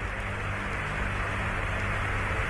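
Steady hiss of static with a low hum on the mission's radio communications channel, an open line between transmissions.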